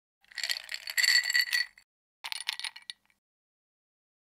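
Ice rattling and clinking in a cocktail shaker: a longer burst of shaking, then a shorter one about two seconds in.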